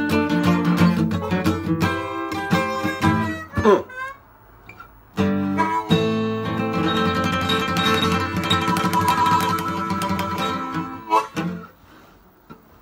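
Acoustic slide guitar and harmonica playing a blues tune. A sliding glide comes about three and a half seconds in, then a short break, then held notes that close the song and stop about a second before the end.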